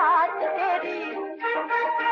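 Music from a late-1940s Hindi film song: a female playback singer's held, wavering note at the very start gives way to the orchestra's instrumental passage.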